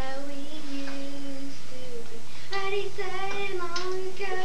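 A child singing solo without accompaniment, holding long notes: a low one through the first half, then a higher one in the second half.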